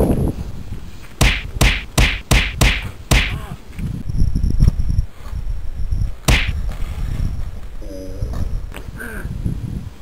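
Staged fight hits: a quick run of six sharp swish-and-smack strikes in the first three seconds, then one more about six seconds in, over a steady low rumble.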